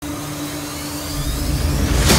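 Whooshing riser sound effect under a TV channel's animated logo: a noisy rush with a faintly rising tone that swells gradually in loudness.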